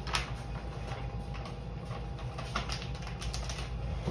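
Scattered small clicks and taps, the sharpest just after the start and a quick cluster in the second half, over a steady low hum.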